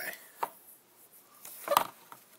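Handling of a carded toy car in its plastic blister pack against a wooden table: a sharp click about half a second in and a louder short knock near the end.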